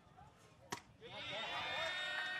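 A single sharp pop of a pitched baseball into the catcher's mitt about three-quarters of a second in, followed by faint distant voices.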